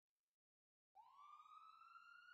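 Faint siren winding up: silence, then about halfway through a single tone comes in and rises in pitch, quickly at first and then slowly.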